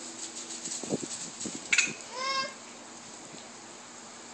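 A toddler's short high-pitched vocal sound about two seconds in, its pitch rising and then easing, preceded by a sharp click. Under it runs the steady hiss of a lawn sprinkler spraying water.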